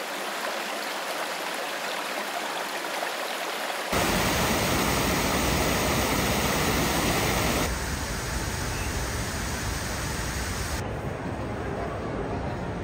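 Water of a small waterfall splashing and cascading over mossy rocks in a steady rush. It is loudest from about four seconds in until nearly eight seconds, and fainter before and after.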